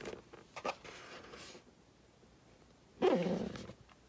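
Plastic welding helmet shell being handled and turned over, with light knocks and rubbing. About three seconds in comes a louder short sound that falls in pitch, under a second long.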